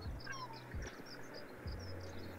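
Birds calling faintly, many short high chirps, with a few low thuds of wind buffeting the microphone.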